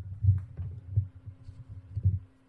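Low, dull thumps about once a second over a faint steady hum.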